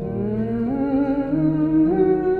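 A woman hums a wordless melody that rises and wavers in pitch, over ringing acoustic guitar.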